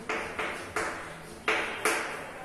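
Chalk writing on a blackboard: five short strokes, each starting with a tap, three in quick succession and then two more after a pause, the last two the loudest.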